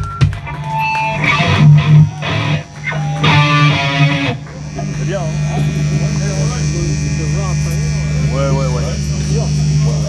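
Live black metal band: distorted electric guitars and drums until about four seconds in, then a held, droning guitar note with voices over it.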